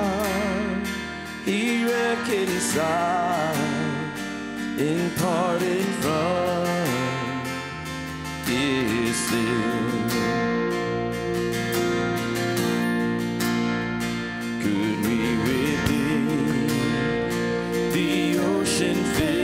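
Live worship music: voices singing a hymn in long phrases with vibrato over a strummed acoustic guitar and steady held accompaniment.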